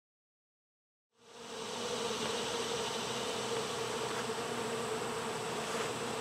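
Honeybees buzzing in a steady hum around an opened hive, fading in after about a second of silence.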